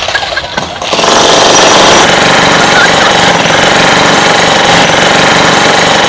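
Electric demolition hammer (jackhammer) breaking up concrete paving. It starts about a second in and then hammers rapidly and steadily.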